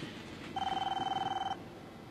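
Electronic telephone ringing: a single warbling ring about a second long, starting about half a second in.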